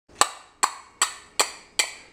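A pair of small brass hand cymbals struck together five times, about two and a half clinks a second, each one ringing briefly.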